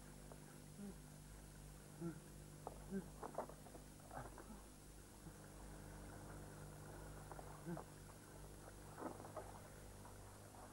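Faint, scattered knocks and rattles of a wooden kitchen cupboard being searched by hand, most of them in a cluster a few seconds in and again near the end, over a low steady hum.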